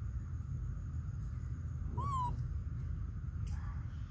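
A young macaque gives one short, high coo about two seconds in; the call rises and then dips slightly in pitch. It sits over a steady low rumble, and a faint click follows a moment later.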